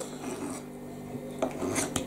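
A fork faintly scraping against a dish of food, with a few light clicks from the cutlery towards the end.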